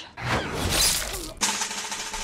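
A loud crash with a shattering, breaking sound in a film's sound mix, lasting about a second, followed by a weaker, steadier noise with a faint held tone.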